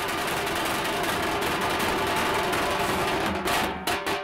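A group of street drummers beating large double-headed drums with sticks in a fast, continuous roll that breaks into separate, distinct beats about three seconds in.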